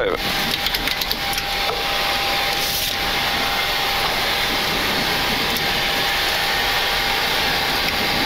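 Steady flight-deck noise of a Boeing 737-800 at ground idle: its two CFM56-7B engines just started and running, with air-conditioning hiss and a thin steady whine through it. A few light clicks come about a second in.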